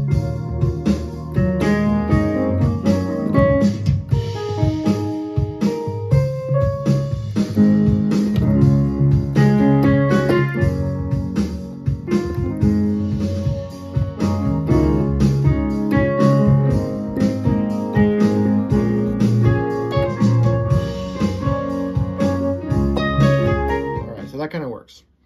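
A backing-track song with a steady beat and keyboard parts, played back from a USB stick through the Yamaha CK61 stage keyboard's audio trigger. Its playback volume is being raised above the default setting of 64.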